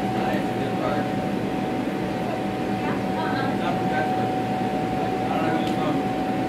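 Steady drone of electric blower fans keeping inflatables up, with a constant whine running through it, under faint background chatter of children's voices.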